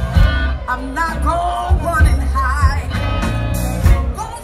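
Live blues band playing loud and steady: a woman singing over electric guitar, a drum kit with a regular beat, and violin.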